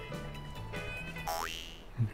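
Quiet background music with light repeating notes, and a short rising whistle-like sound effect about one and a half seconds in.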